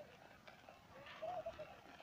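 A dove cooing faintly: a short run of low, rounded coos about a second in.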